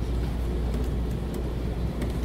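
Steady low hum of room noise, with a few faint taps as a six-digit code is typed on a laptop keyboard.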